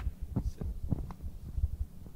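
Handling noise on a live handheld microphone: irregular low thumps and a few short knocks as it is gripped and passed from hand to hand.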